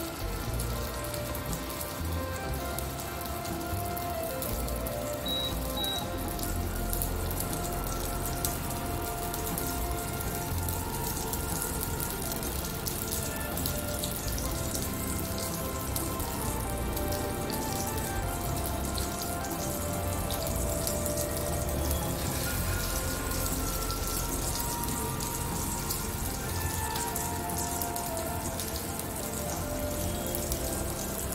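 Minced-meat patties sizzling in hot oil in a frying pan: a steady sizzle of many small crackles, with background music playing.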